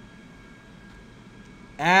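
Faint steady hiss and hum of room tone through a desk microphone, with a man's voice starting near the end.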